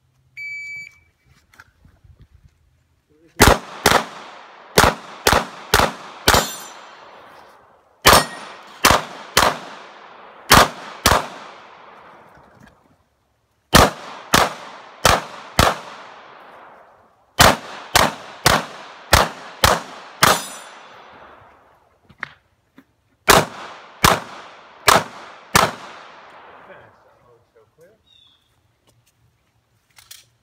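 An electronic shot-timer start beep, then about two dozen pistol shots fired in quick strings of two to six, with pauses of a second or two between strings as the shooter moves through a practical-shooting course. Each shot rings out with a fading echo.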